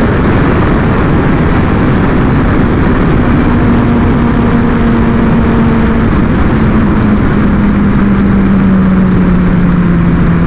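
Loud, steady wind rush over a helmet microphone at speed on a Kawasaki Ninja H2. Under it the supercharged inline-four's note falls slowly as the bike slows in sixth gear.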